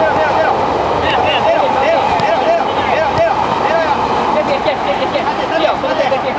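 Futsal players' voices: many short shouted calls to one another, repeating throughout, over a steady hum of city noise.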